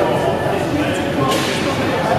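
Indistinct chatter of several voices in a large hall, with a brief noise about a second and a half in.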